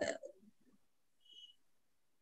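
Near silence in a pause between a speaker's phrases, with the tail of a word at the very start and a brief faint high-pitched beep a little past the middle.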